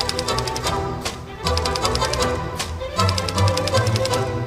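Manual typewriter keys clattering in rapid runs of keystrokes, over background music.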